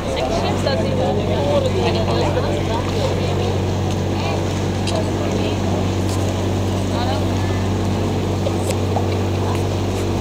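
Canal tour boat's motor running with a steady low hum that steps up right at the start and holds. People talk over it in the first few seconds.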